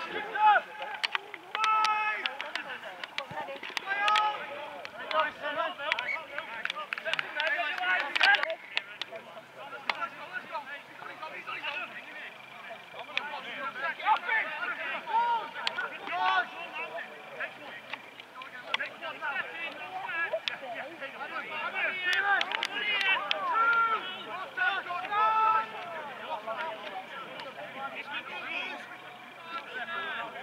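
Men's voices shouting and calling out across a rugby league pitch during play, scattered and at a distance, louder in the first few seconds.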